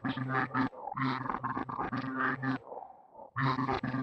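A man's low voice making drawn-out, wordless sounds in three stretches with short pauses between them.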